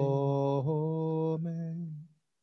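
Synagogue cantor chanting a liturgical melody in long held notes, moving to a new note twice. The sound cuts off abruptly at the end.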